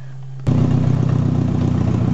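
Nissan KA24DE four-cylinder engine idling steadily in an open engine bay, cutting in suddenly about half a second in after a low steady hum; it is running to warm up so the coolant temperature gauge can be checked.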